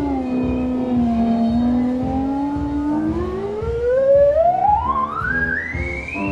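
Electronic oscillator tone sweeping in pitch: it slides down and holds low for about two seconds, then rises steadily and smoothly into a high whistle-like pitch near the end.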